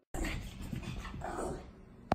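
A Shih Tzu making short breathy noises and small squeaks while she rolls and wriggles on a carpet. The sounds come irregularly and vary in loudness.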